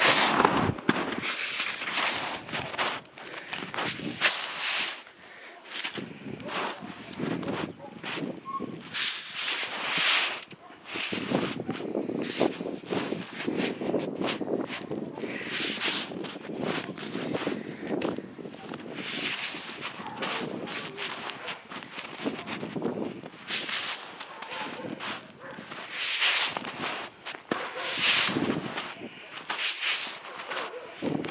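Homemade corrugated-cardboard snowshoes stepping through soft, thawing snow. Each step is a crunch and swish, coming irregularly every few seconds as the shoes sink fairly deep.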